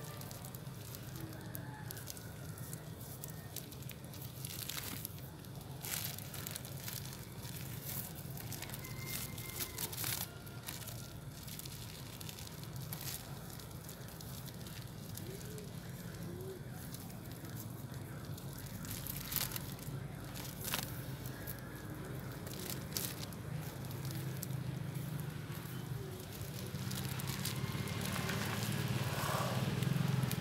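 Thin plastic bag crinkling and crackling in irregular bursts as it is wrapped and tied by hand around a cutting's root ball, over a low steady hum.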